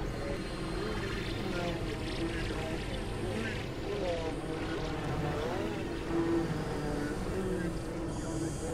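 Layered experimental synthesizer drones and noise: a dense low rumble under wavering tones that bend up and down in pitch.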